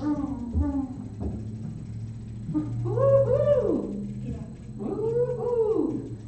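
Brief talk, then a voice making two long high calls that each rise and fall in pitch, about three and five seconds in, over a low steady hum.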